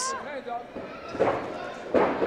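Indistinct voices and crowd noise in a large arena hall, with the sudden thud of a kick landing and being checked near the end.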